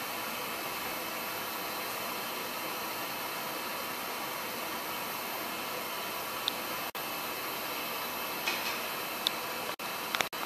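Electric motor and pump unit in the base cabinet of a printing machine, running steadily with an even hiss and faint hum. A few faint ticks come near the end.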